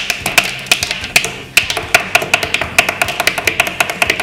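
Pens drummed on a wooden desk like drumsticks: fast, sharp taps, about six a second, over a J-rock song playing.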